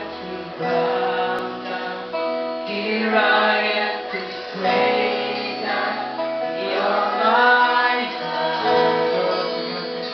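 A live worship band playing a song: singing voices over guitars, heard as a room recording.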